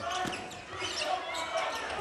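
Broadcast arena sound of a basketball game in play: a basketball bouncing on the hardwood court over the murmur of the crowd in a large hall.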